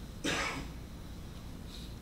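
A single short cough, about a quarter second in.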